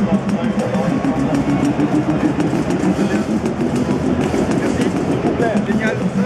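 Korg Monotribe analogue synthesizer playing a sequenced pattern: a buzzy single-note synth line that steps up in pitch about a second in, over a rapid ticking drum rhythm.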